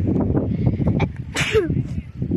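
Wind buffeting the microphone as a steady rumble, with one brief, sudden, breathy burst about one and a half seconds in.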